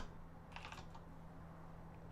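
Faint typing on a computer keyboard: a few keystrokes, bunched about half a second in, over a low steady hum.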